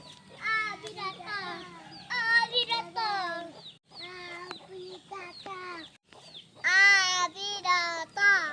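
Toddlers' high-pitched voices babbling and calling out in short bursts, with a brief pause about four seconds in and the loudest call near seven seconds.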